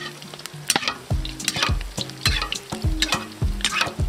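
Hot vegetable oil sizzling and crackling around potato-and-meat dumplings deep-frying in a cast-iron kazan, with a slotted spoon moving them about in the oil to turn them.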